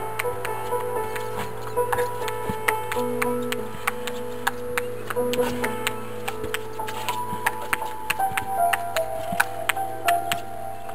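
A table tennis ball rallied against a concrete wall with a table tennis bat: a steady run of quick clicks as the ball meets bat and wall, about three a second. Background music with held notes plays under it.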